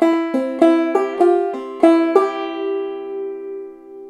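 Five-string banjo played clawhammer style: one measure of about eight quick plucked notes in an even bump-ditty rhythm, with a drop-thumb note onto the second string filling an offbeat. The last note, about two seconds in, is left to ring and fade.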